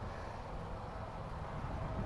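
Quiet outdoor background: a steady low rumble with no distinct sound events.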